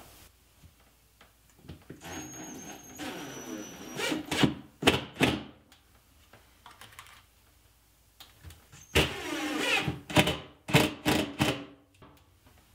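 Cordless drill driving screws through a pre-drilled plywood drawer stop in two short runs, with a thin high motor whine, and sharp knocks and clicks between them as the drill and stop are handled.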